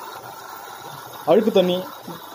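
A brief spoken word or two from a man about a second and a half in, over a steady background noise.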